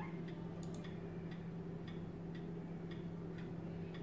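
Faint, regular ticking, about two ticks a second, over a steady low hum.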